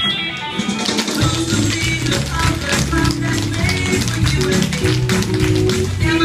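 A recorded song starts suddenly, its bass line coming in about a second later, while children's tap shoes click on a wooden studio floor.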